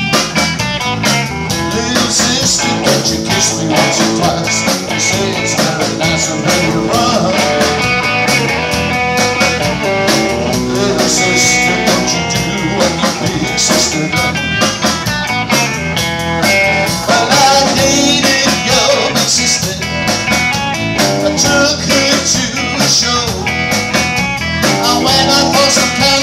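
Live rock band of electric guitar, electric bass guitar and drum kit playing a song together, loud and continuous.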